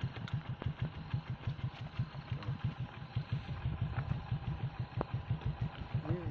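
An engine idling with a steady low rhythmic throb, several pulses a second, and a few faint clicks over it.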